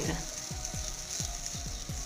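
Banana-and-oat pancake batter sizzling steadily in a small buttered frying pan over low heat. Background music with a quick, steady low beat plays underneath.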